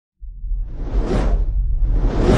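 Whoosh sound effect of an animated logo intro, starting suddenly and swelling to a peak about a second in, over a heavy low rumble.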